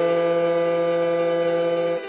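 Electronic keyboard holding one sustained chord with a wind-instrument-like voice, released abruptly at the end.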